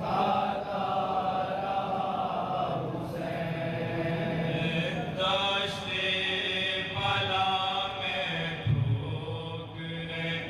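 A group of men reciting a noha, a Shia mourning lament for Imam Hussain, sung together into microphones: a lead voice with others chanting along. The lines are drawn out in long held notes, with short breaks about three and seven seconds in.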